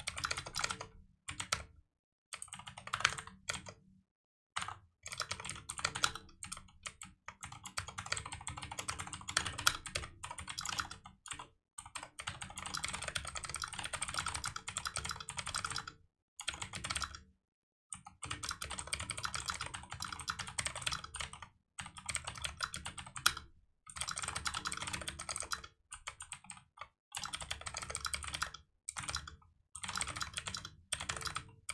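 Typing on a computer keyboard: quick runs of keystrokes broken by short pauses in which the sound drops out completely.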